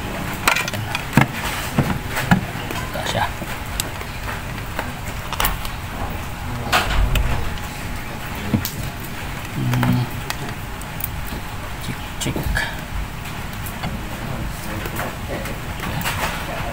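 Scattered clicks and knocks of hands at work on wires and an analog multimeter, including its rotary selector switch being turned, over a steady low background hum.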